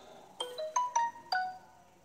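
A short electronic ringtone-style jingle of about five quick plinked notes, rising in pitch and then falling, each note ringing briefly before it fades.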